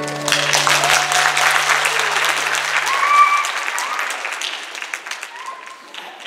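Audience applause breaking out as the hula song ends, loudest over the first three seconds and then fading away. The band's last low note lingers under the clapping and dies out about three seconds in.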